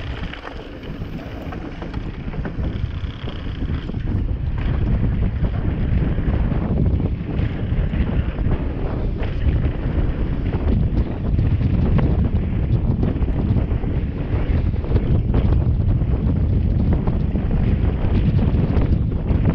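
Wind buffeting an action camera's microphone and mountain bike tyres rumbling on a downhill descent, with frequent short rattles and knocks from the bike over bumps. Louder from about four seconds in as the bike gathers speed.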